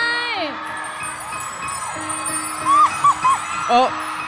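Twinkling chime sound effect over soft background music; a drawn-out voice glides down and stops in the first half-second. Near the end come three short rising-and-falling tones, then a brief vocal 'eh'.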